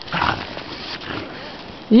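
A dog's noisy, irregular breathing and snuffling close to the microphone, a run of soft puffs.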